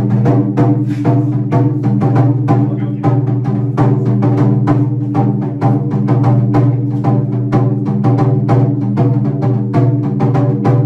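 Onidaiko dance music: a taiko drum struck in a fast, steady rhythm, about three to four beats a second, over a sustained low drone.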